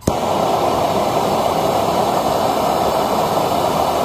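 Handheld gas torch flame burning steadily with a loud, even rushing noise, starting suddenly as it is lit.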